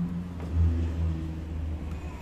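A low rumble over a steady hum, swelling about half a second in and easing off after about a second.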